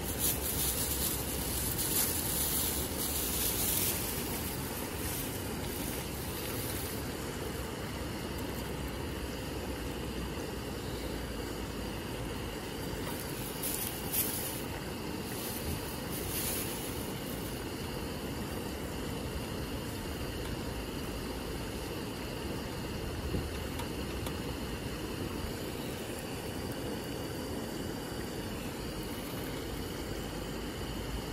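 A pot of water at a rolling boil on a portable gas stove, a steady bubbling hiss with the burner running under it. There is brief rustling and handling twice, about a second in and around a quarter of the way through, as dry thin wheat noodles are handled and added.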